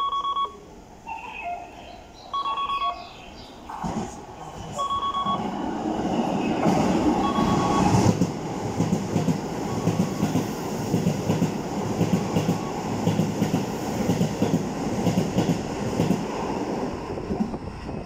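Short electronic beeps repeat about every two and a half seconds. Then a Keikyu New 1000 series electric train passes through the station at speed without stopping, its wheels rumbling and clattering in a rhythm over the rail joints for about twelve seconds before it fades near the end.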